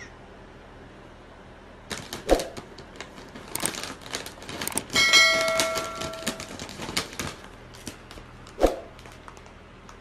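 A cat nosing, biting and pawing at a foil potato-chip bag, making it crinkle and crackle, with two sharp thumps. About five seconds in, a bright notification ding rings for about a second and a half.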